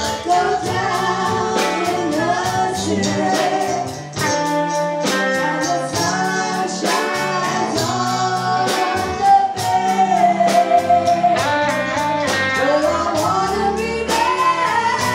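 Live rock band playing: two women singing the lead together over electric guitars and a drum kit keeping a steady beat.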